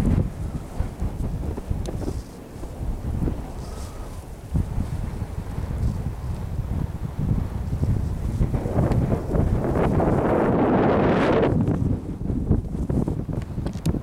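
Wind buffeting the camera microphone, a rough low rumble that swells into a stronger gust about nine seconds in and eases off about three seconds later.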